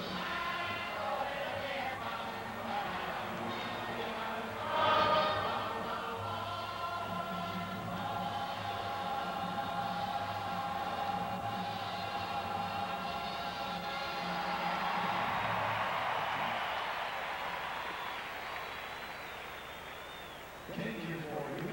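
Music played through a ballpark, with long held notes, over crowd noise. The loudest moment is a brief louder burst about five seconds in. In the second half the crowd noise swells, then fades near the end.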